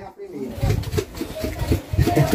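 Quiet background talk: voices of people speaking between the louder nearby speech.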